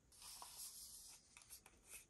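Faint handling noise of hands on a Tamron 17-70mm zoom lens: a soft rustle of skin rubbing on the lens barrel and hood, then a few small faint clicks in the second half.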